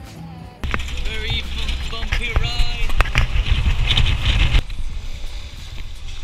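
Loud low rumble of a 4x4 jeepney driving over a rocky lahar riverbed, with several sharp knocks as it jolts and passengers' voices over it. It runs for about four seconds, then drops away.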